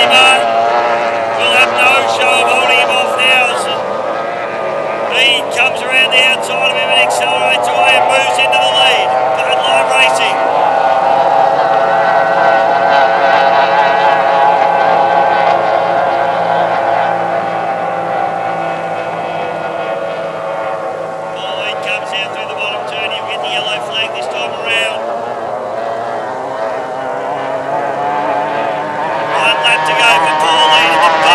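Racing outboard motors on tunnel-hull race boats running at full throttle as the boats pass. The engine pitch slowly rises and then falls through the middle of the stretch.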